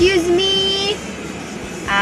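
A person's voice: one drawn-out vocal sound of about a second, rising at the start and then held on one pitch, followed by steady background noise.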